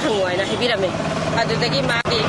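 A woman speaking, with a steady low hum coming in about a second in.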